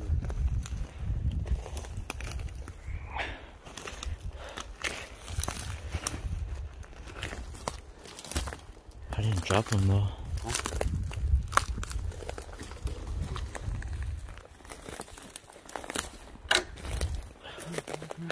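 Footsteps crunching over dry pine needles and twigs on a forest floor, with many small snaps and crackles of breaking twigs.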